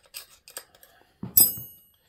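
A few light metal clicks of wrench work on a turbocharger's bolts, then a sharp clank of a steel combination wrench set down on the bench, ringing briefly at several high pitches.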